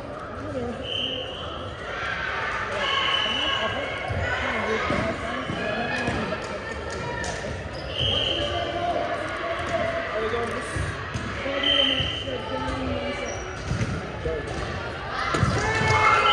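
Sports shoes squeaking on a wooden hall court every few seconds, with the thuds of a volleyball being hit. Indistinct voices and calls carry through a large, echoing sports hall.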